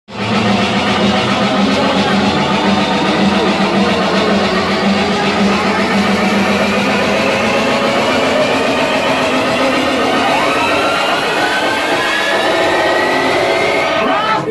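Loud electronic dance music played over a club sound system, heard through a phone microphone, with a steady low drone and a tone that rises steadily in pitch over the last few seconds.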